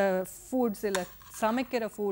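A woman speaking in short phrases with brief pauses.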